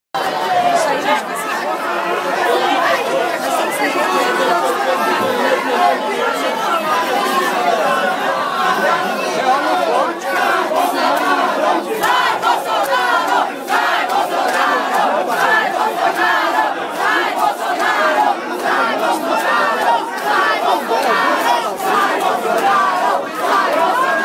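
Crowd of protesters chanting and shouting in unison, many voices at once, loud and unbroken.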